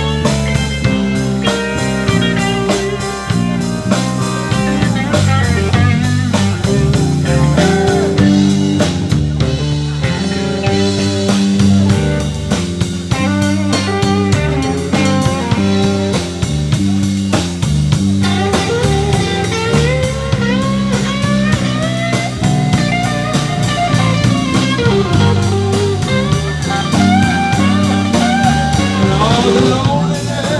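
Live blues band playing an instrumental break: a lead electric guitar with bent, sliding notes over bass and a drum kit.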